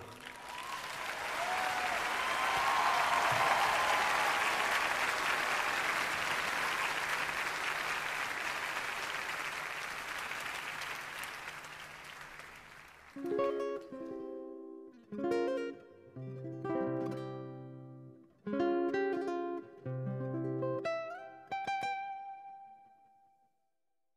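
Large audience applauding, with a few whistles early on, the applause slowly dying away over about thirteen seconds. Then a nylon-string acoustic guitar plays strummed chords in short phrases with pauses between them, about six strokes in all.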